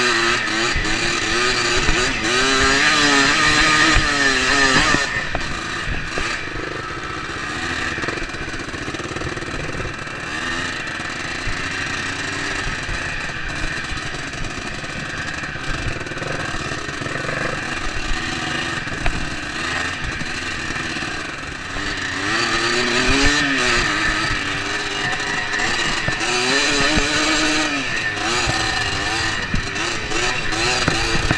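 Dirt bike engine running under load on a rough trail, its pitch rising and falling with the throttle. It runs louder and at higher revs for the first five seconds, eases off through the middle, then climbs again in the last third.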